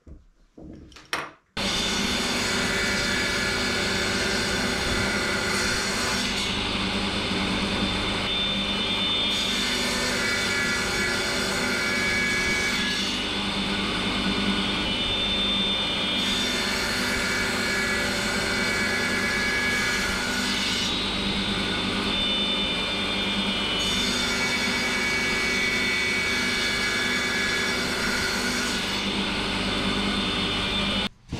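Stationary woodworking power tool running steadily while a small wooden block is held against it, the sound shifting every few seconds as the wood is worked. It begins suddenly about a second and a half in.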